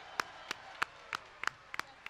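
A single person clapping hands at a steady pace, about three claps a second.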